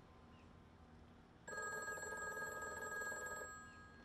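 A phone ringing: one bell-like trilling ring about two seconds long, starting about a second and a half in and fading out near the end.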